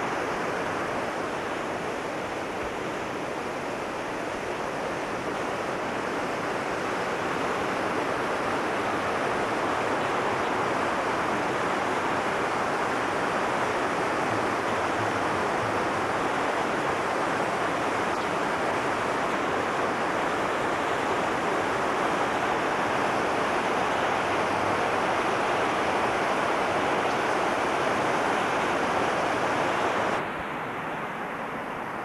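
Steady rushing noise of running water, growing slightly louder partway through.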